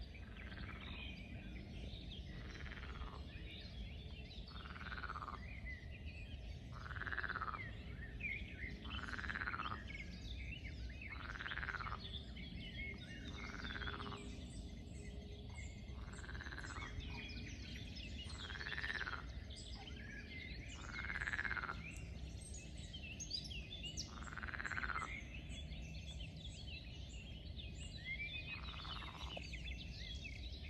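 A frog croaking: one short call every two to three seconds, rising and falling, with birds chirping in the background.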